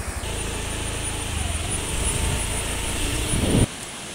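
Steady rumbling roar of water pouring through the dam's open spillway gates, with wind buffeting the microphone; it cuts off abruptly near the end.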